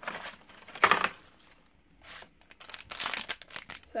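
Crinkly plastic blind-bag packet being handled and torn open by hand: bursts of crinkling with a louder rip about a second in, a short pause, then a run of crinkling in the last two seconds.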